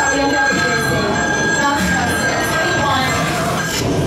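Loud staged haunted-house sound effects: a steady high-pitched squeal lasts for the first couple of seconds and then stops. It sits over a noisy rumbling mix with voices underneath.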